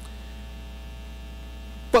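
Steady low electrical mains hum with fainter, higher hum tones above it. A man's voice starts again right at the end.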